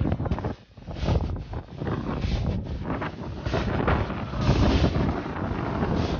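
Wind buffeting the microphone in uneven gusts, a rushing noise heaviest in the low end that swells and drops, loudest about four to five seconds in.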